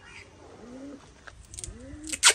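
A pigeon cooing: two low coos about a second apart, each rising and then falling in pitch.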